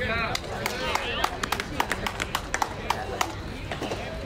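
Players' and spectators' voices calling out at a baseball game, then a run of sharp claps between about one and a half and three seconds in.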